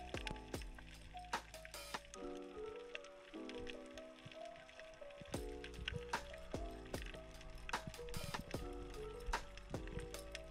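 Soft background music of held notes that change in steps, with scattered faint clicks throughout.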